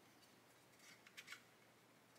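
Near silence, with a few faint scrapes and light clicks about a second in: hands handling a plastic model helicopter fuselage held in spring clamps.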